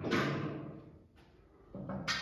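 Wooden snooker cue and rest being handled and set down on the table: a knock right at the start that dies away over about half a second, and another knock near the end.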